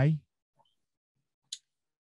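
The end of a spoken "Why?" rising in pitch, then near silence broken by one short, faint click about one and a half seconds in.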